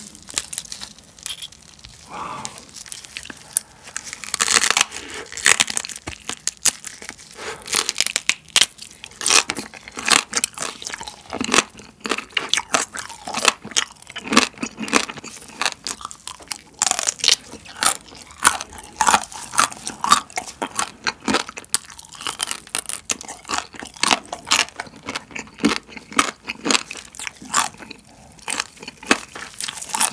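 Soy-marinated raw crab (ganjang-gejang) being eaten: the crab shell is pulled and cracked apart by hand, then crab legs are bitten and chewed, with many sharp crackles of shell throughout.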